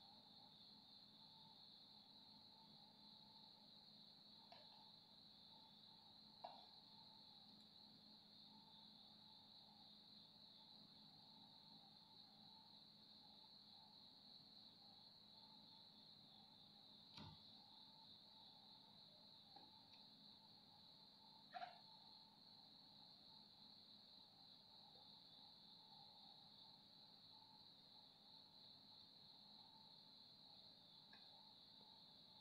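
Near silence: room tone with a faint, steady high-pitched drone and a few faint clicks, the clearest about six, seventeen and twenty-one seconds in.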